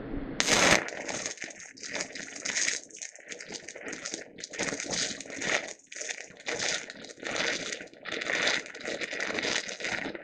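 Stick welding arc from a deep-digging fast-freeze electrode (6010/6011 class) running an open root pass on beveled steel plate. The arc strikes with a burst about half a second in, then crackles on, surging and easing about once a second as the rod is whipped in and out of the puddle. The whooshing surges are the sound of the rod burning through the land and scooping out the back of the joint.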